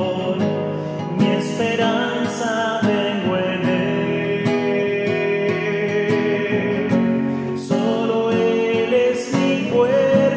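A man singing a Spanish-language worship song, accompanying himself on a classical guitar.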